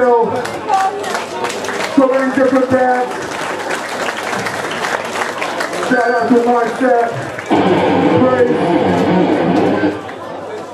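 Crowd shouts and voices with some clapping between songs at a loud live punk gig. From about seven and a half seconds in, amplified guitar sound comes in over the voices.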